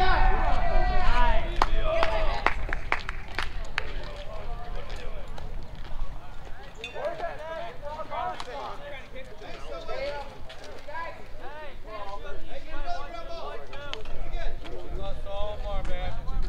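Players and spectators shouting and calling out across an open baseball field, starting with a held yell. A run of sharp claps follows from about one and a half to four seconds in, then scattered calls and chatter.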